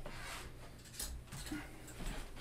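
Loxley Featherweight Black tungsten darts being pulled from the dartboard, with faint clicks and clinks of the darts in the hand about a second in and again half a second later.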